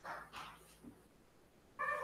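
Faint high-pitched animal whine, heard briefly at the start and again near the end, where it falls in pitch.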